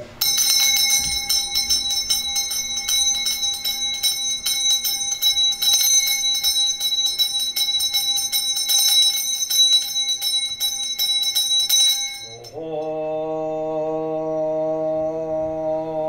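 A Buddhist ritual handbell shaken rapidly and continuously, a bright jingling ring of several high tones, for about twelve seconds. It stops, and a man begins chanting on a steady, held pitch.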